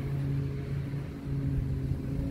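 Pressure washer running steadily, a constant low hum.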